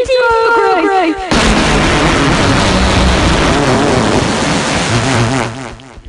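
A high-pitched, warbling cartoon voice for about a second, then a very loud, heavily distorted blast of noise lasting about four seconds before it fades out near the end: a deliberately ear-splitting sound effect.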